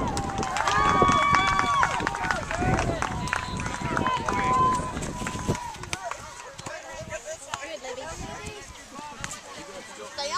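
Distant, overlapping shouts and calls of players and spectators across a soccer field, several held as long calls in the first few seconds. After about five seconds only fainter scattered voices remain.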